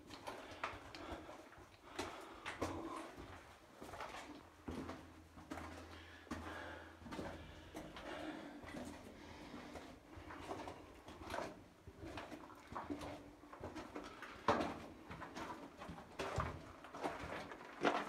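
Footsteps scuffing on loose rock and gravel along old mine cart tracks in a narrow tunnel, with the walker's breathing.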